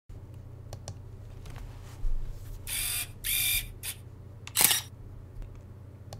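Camera sound effects: a few faint clicks, then two short mechanical bursts about half a second apart around the middle, and a sharp shutter click just before the end, over a low steady hum.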